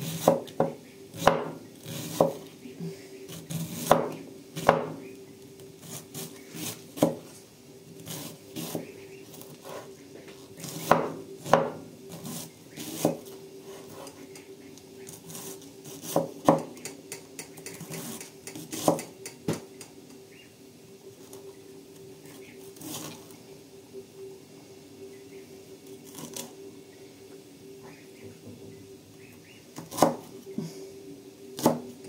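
Large kitchen knife shredding white cabbage into thin strips on a wooden cutting board: irregular sharp knocks of the blade meeting the board, coming thickly for the first twenty seconds or so and sparser after that.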